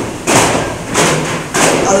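Duffs (frame drums) struck in unison by a group of performers: three strong, evenly spaced beats about two-thirds of a second apart, with singing coming back in at the end.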